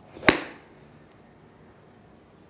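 A 7-iron swung through a golf ball on an artificial turf hitting mat: a brief swish, then a single sharp strike about a third of a second in. The ball is struck slightly out of the heel.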